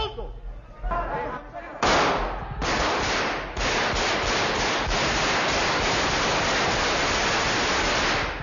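Automatic gunfire on an old, noisy television recording: a few shouted words, then from about two seconds in a dense, continuous racket of shots that runs on without a break.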